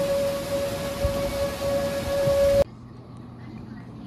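Heavy rain pouring, with an outdoor tornado warning siren holding one steady tone in the distance. Both cut off suddenly about two and a half seconds in, leaving a much quieter low hum.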